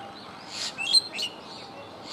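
Small birds chirping: a cluster of short, quick high chirps and tweets, loudest just under a second in, over a faint steady background hiss.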